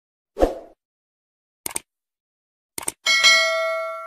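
Subscribe-button animation sound effect: a soft pop, two quick mouse clicks, then a bright bell ding that rings out and fades over more than a second.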